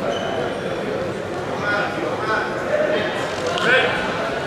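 Indistinct voices echoing in a large indoor sports hall, with several people calling out over a steady murmur and one louder, rising shout near the end.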